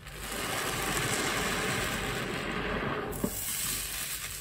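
Soft grout sponge soaked with dish soap being squeezed in a basin of soapy suds: a steady rush of squelching water and foam for about three seconds, stopping suddenly about three seconds in.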